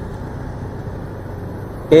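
Steady low hum and rumble of a motorcycle moving slowly in queued traffic, with the surrounding traffic noise.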